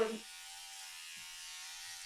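Electric hair clippers running steadily with an even buzzing hum while cutting hair.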